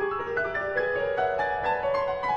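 Two pianists playing contemporary classical piano music, a steady run of separate, distinct notes in the middle and upper register.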